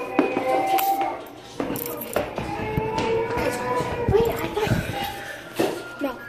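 Indistinct voices over background music, with a few sharp knocks in between.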